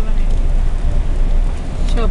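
Steady, loud low rumble of a moving car heard from inside the cabin: engine and road noise.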